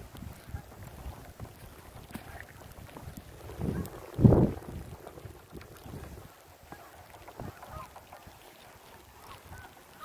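Wind rumbling on the microphone with a louder gust about four seconds in, and faint bird calls scattered through it.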